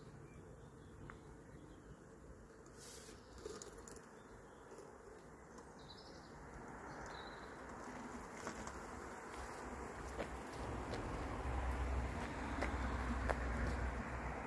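Swarming honeybees buzzing in the air, growing louder through the second half, with a low rumble joining near the end.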